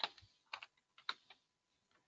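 Faint computer keyboard keystrokes and clicks: a handful of short, sharp clicks in the first second and a half, as a copied line is pasted into a code editor.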